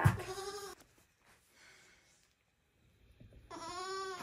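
Young goat kid bleating twice: a short call in the first second and a longer, wavering one starting near the end, with near silence between.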